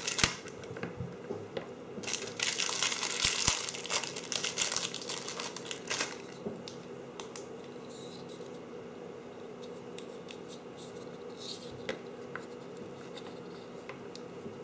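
Plastic packaging crinkling and rustling with small clicks as heat shrink tubing is taken out, busiest for the first six seconds or so, then only faint ticks of handling.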